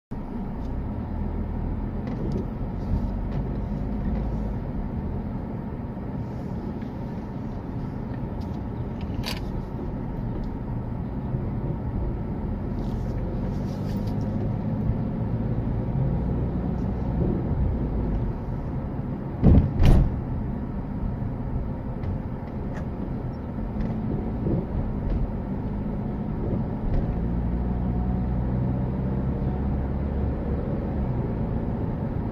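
Car driving slowly, heard from inside the cabin: steady low engine and road rumble, with two heavy thumps about half a second apart a little under two-thirds of the way through.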